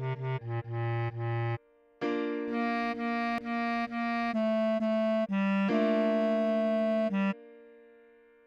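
Bass clarinet playing short repeated melody notes over a held B-flat major keyboard chord: a low phrase, a brief pause, then a higher phrase of repeated notes stepping down. The notes stop shortly before the end and the chord dies away.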